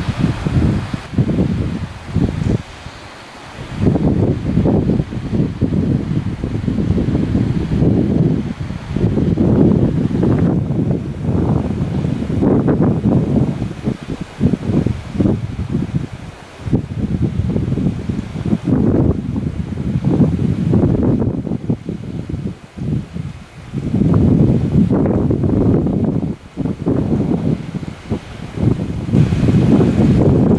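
Mountain wind buffeting the camera microphone in gusts, loud surges with short lulls between them every few seconds.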